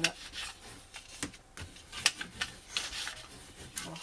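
Hands rubbing and pressing down layers of paper and cardstock, a run of short, irregular rustling scrapes, as a freshly glued reinforcement layer is smoothed flat.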